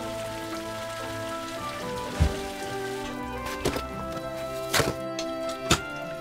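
Background film music with slow, held notes over a faint patter of falling meltwater. From about halfway, a handful of sharp knocks sound at uneven intervals.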